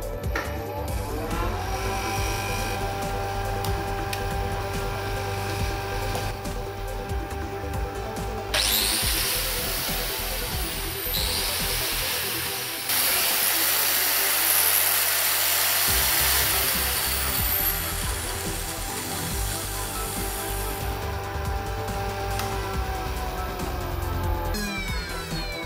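Electric motor spinning up with a rising whine in the first second or so, then running with a steady hum. About eight seconds in, an angle grinder starts with a rising whine and runs briefly. It stops, then runs again for about eight seconds and winds down with a falling whine.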